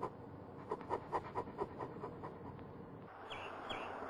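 German Shepherd panting, a quick run of short breaths. About three seconds in, the sound gives way to an outdoor background with a few short, high, falling bird chirps.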